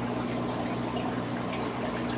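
Aquarium filtration running: a steady trickle and splash of moving water over a steady low electrical hum from the pumps.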